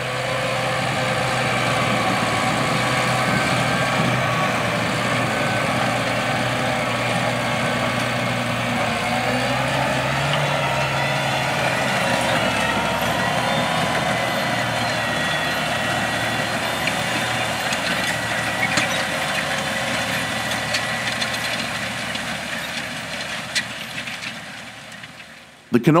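John Deere 8360RT track tractor running steadily under load as it pulls a 1795 planter, a continuous engine drone with a faint held whine over it. Its pitch shifts slightly about ten seconds in, and it fades out near the end.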